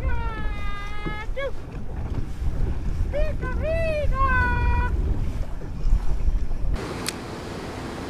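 Heavy low rumble of wind on the microphone and water under a boat on open water, with a person's high, drawn-out vocal calls twice over it. The rumble cuts off abruptly about seven seconds in, leaving a quieter hiss and a single click.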